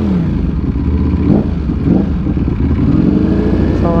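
Ducati Panigale V4 engine running through an Arrow titanium slip-on exhaust as the bike rolls at low speed. The engine holds a low, steady note, with two short rises in pitch between one and two seconds in.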